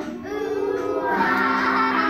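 A class of kindergarten children singing a song together, with a long held note near the end.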